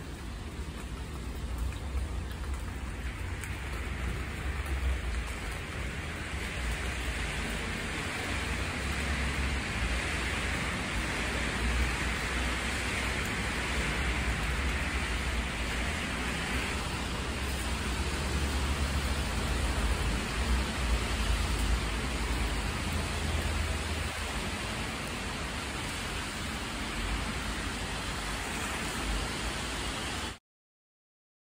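Steady rain falling, a continuous even hiss with a low rumble underneath.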